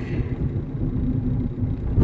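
Steady low rumble of a car driving along a road, heard from inside the cabin.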